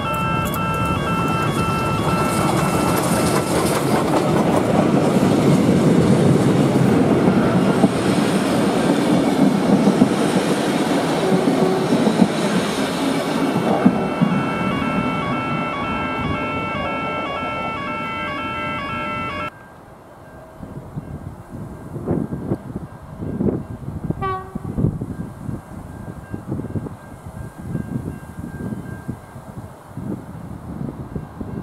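Victorian Railways K-class steam locomotive K183 passing close by with a train of carriages: a loud rumble and clatter of the locomotive and wheels that is loudest about a third of the way in and then fades as it goes away. About two-thirds in, the sound cuts off abruptly to a quieter outdoor background with gusts of wind on the microphone.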